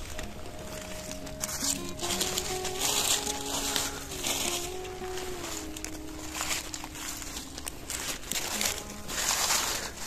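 Leaf litter rustling and crackling in short bursts as a hand brushes and parts the dead leaves to get at mushrooms, loudest about three seconds in and near the end. Under it runs a faint humming tone that shifts pitch in small steps now and then.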